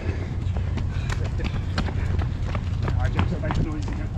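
Running footsteps on a concrete path, a few footfalls a second, over a steady low rumble of wind and movement on a camera carried by a runner.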